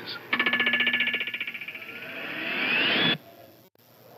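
Car engine running with a rapid, even pulsing beat after a cold start. A whine rises in pitch over its last second, then the sound cuts off abruptly.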